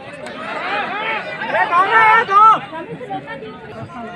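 Many high voices shouting at once, over a steady background of crowd chatter; the shouting is loudest between about half a second and two and a half seconds in, then falls back to the murmur.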